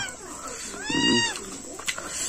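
A cat meowing once, about a second in: a single call that rises and falls in pitch.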